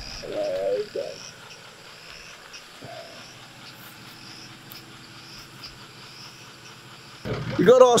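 Faint night-time insect chorus: high chirps repeating at a regular pace over a steady hiss.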